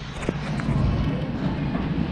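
Handling noise as pumpkins are picked through in a cardboard bin, with a low rumble and a single light knock about a quarter second in.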